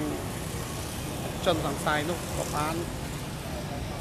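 A man speaking Khmer in short phrases over a steady low background rumble.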